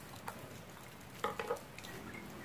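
Faint clicks and crinkles of thin plastic drinking cups being handled and pierced with a pointed tool to make drainage holes. A short, louder crackle comes just past the middle.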